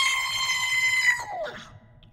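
A voice pitched up chipmunk-style by a voice-synth app, holding one long high note for about a second, then sliding down and fading out.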